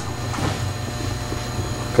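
Steady low mechanical hum with a faint, thin high-pitched whine over it, an unchanging background drone with no distinct events.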